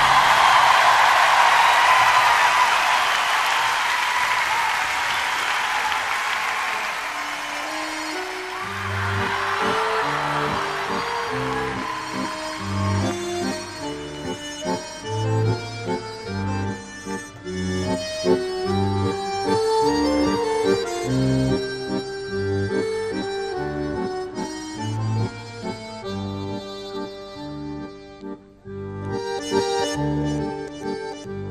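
Crowd cheering and whistling that dies away over the first several seconds. About eight seconds in, a live band starts the instrumental intro of the next song, with a low bass line under a melody that sounds accordion-like.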